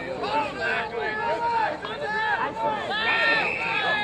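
Many men's voices shouting over one another in a scuffle between rugby players on the pitch. A short, steady whistle blast sounds about three seconds in.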